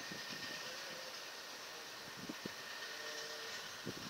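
Faint, steady rumble of distant heavy vehicles' engines from an oversize-load convoy stopped down the road, with a faint steady high tone over it.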